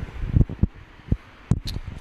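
Handling noise and wind buffeting on a handheld microphone: irregular low thumps and rumble as it is moved, with two sharp clicks about a second and a half in.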